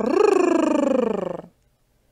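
A woman's voice doing a growl as a long rolled 'r-r-r-r' trill, rapidly pulsing and sinking slowly in pitch, stopping about a second and a half in.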